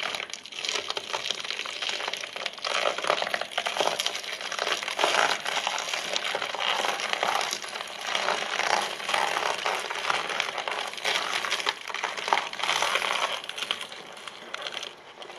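Shredder crunching through salad vegetables: a dense, unbroken run of snapping and crackling that swells and eases in surges.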